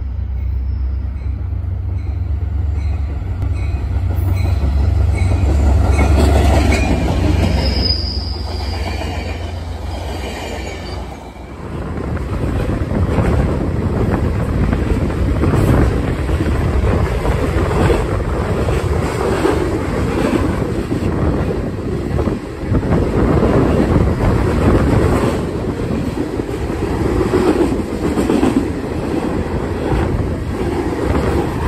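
A train running on the rails: a low rumble with high, squealing wheel tones for the first ten seconds or so, then wheels clattering steadily over the rail joints from about twelve seconds on.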